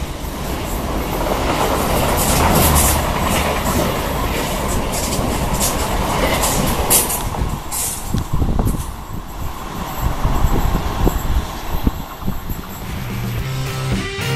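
Renfe Class 130 (Talgo 250) train passing at speed: a continuous rush of wheels on rail with scattered sharp clicks, dying away over the second half as the train recedes.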